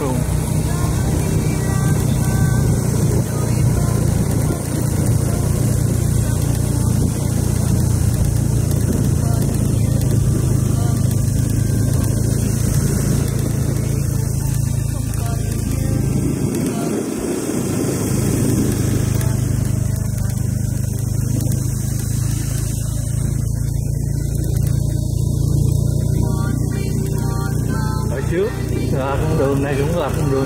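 Small motorbike engine running steadily while riding, with wind and road noise; the engine note drops out briefly about halfway through.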